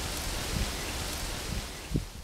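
Steady hissing background noise, like rain or distant traffic, with a few faint low thumps, one about a second and a half in and one near the end.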